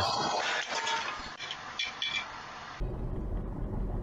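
A car crashing into storefront bollards, heard through a security camera's microphone: a noisy clatter with sharp clinks of debris. About three seconds in it cuts to the low, steady rumble of a car driving on a road, heard from a dashcam.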